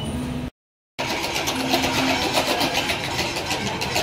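Large prize wheel spinning, its pointer clicking rapidly and evenly over the pegs. The sound drops out for half a second at a cut, about half a second in, before the ticking starts.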